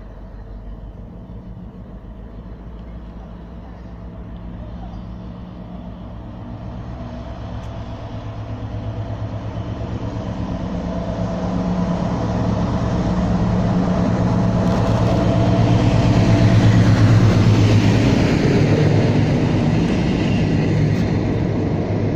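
Two Class 60 diesel-electric locomotives running through together, their Mirrlees eight-cylinder diesel engines giving a steady low drone that grows louder as they approach, peaks about three-quarters of the way through and eases a little near the end.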